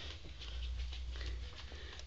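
Faint rustling of cloth bedding with a low handling rumble, as a hand reaches under a blanket to a sleeping ferret.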